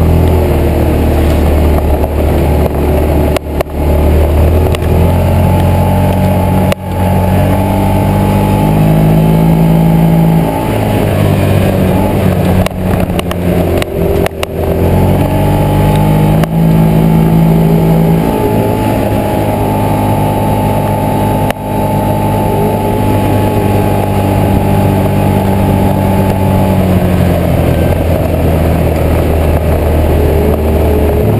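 Yamaha Rhino side-by-side's engine running under load on a dirt trail, its pitch rising and falling as the throttle changes, with a few sharp knocks from the machine jolting over bumps.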